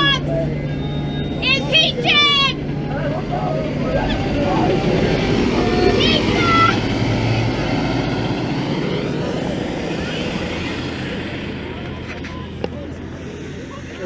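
A coach bus passing close and pulling away, its engine and road noise growing louder about halfway through, then fading. People shout a few times in the first seconds and once around the middle.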